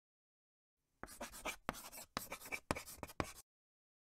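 Chalk writing on a blackboard: a quick run of short scratching strokes that starts about a second in and stops about half a second before the end.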